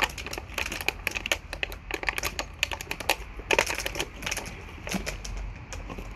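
Empty plastic drink bottles crinkling and clattering as puppies nose, push and step on them, an irregular run of sharp clicks and crackles.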